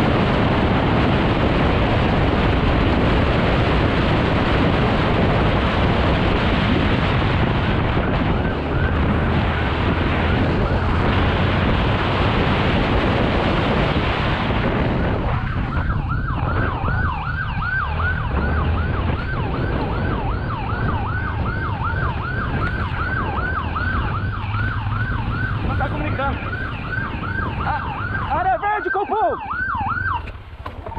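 Wind rush and motorcycle engine noise at speed, then, about halfway through, a police motorcycle siren starts yelping in quick, repeated rising-and-falling sweeps.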